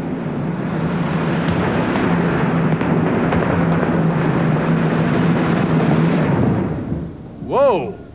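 Twin Allison V12 aircraft engines of a modified pulling tractor running hard under sled load, a steady low drone with popping and spitting. The engines drop away about six and a half seconds in: not quite enough power for a good run.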